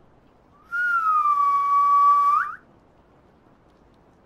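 A single whistled note, about two seconds long. It dips slightly in pitch, holds steady, then flicks up sharply just before it stops.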